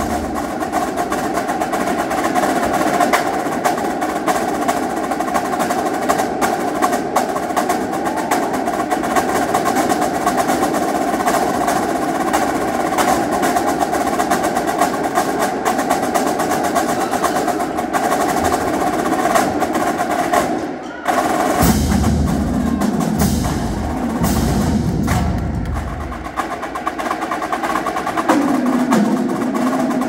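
Marching drumline of snare drums, tenor drums, bass drums and cymbals playing a fast percussion routine, dense with rapid snare strokes. The playing breaks off for a moment about twenty-one seconds in, then comes back with heavy bass drum hits for several seconds.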